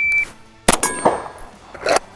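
A shot timer gives one short high beep. About three-quarters of a second later comes a single pistol shot, followed by the ringing clang of a steel target plate being hit.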